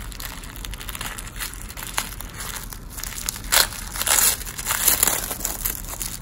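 Paper being torn and crumpled as a small gift box is unwrapped: a run of crinkling rustles that get louder in the second half.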